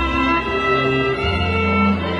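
Live string ensemble of two violins and a cello playing a slow piece, with held bowed violin notes over a low cello line that moves to a new note about a second in.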